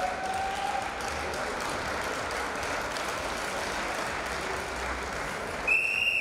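Steady applause from the arena crowd, then near the end a referee's whistle gives one long, loud blast to start the wrestling bout.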